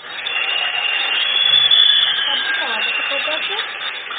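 An audience applauding steadily, with some cheering mixed in.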